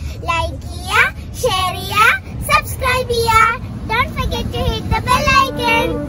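Young girls speaking to the camera in a lively, sing-song way.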